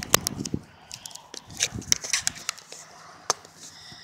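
Handling noise from a phone held against the microphone: a quick run of sharp clicks and rubs at the start, then a few scattered clicks, as the phone's cover is snapped back on.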